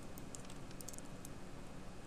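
Faint clicking of a computer mouse, its scroll wheel and button, a quick cluster of small clicks in the first second or so, over a steady low hum.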